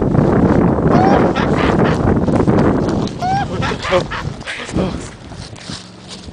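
Hurried footsteps crunching through dry leaves and pine litter, with heavy rumble from a camera carried at a run; a few short rising calls sound about a second in and again after three seconds. The noise fades over the last couple of seconds.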